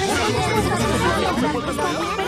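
Several cartoon soundtracks playing at once: overlapping character voices speaking Spanish, blurred into a dense babble of dialogue.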